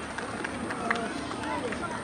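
Spectators' voices, several people calling out at once, overlapping throughout.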